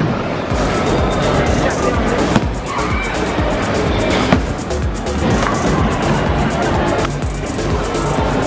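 Bowling ball rolling down a wooden lane with a low rumble, under loud background music, with sharp knocks about two and a half and four seconds in.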